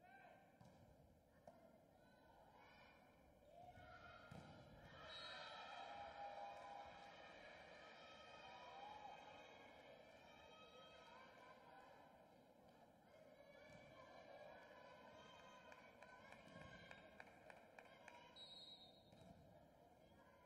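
Faint sound of an indoor volleyball match: a few ball strikes during a rally, then crowd and player voices cheering and shouting after the point, loudest a few seconds in.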